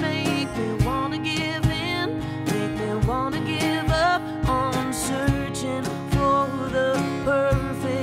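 Live acoustic country trio: a strummed acoustic guitar, a steady cajon beat and a female lead vocal singing a slow line with vibrato.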